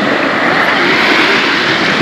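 Steady rushing hiss of calm sea water moving and lapping close around a camera held just above the surface, with no distinct splashes or other events.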